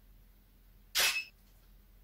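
A DSLR camera's shutter firing once, a single sharp click about a second in.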